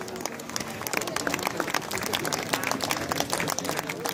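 Crowd applauding: steady, dense hand clapping.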